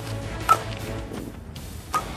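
A softball bat striking a softball twice, about half a second in and just before the end, each a sharp hit with a brief ringing tone, over background music.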